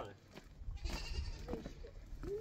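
Goats bleating briefly in a pen, a short raspy call about a second in.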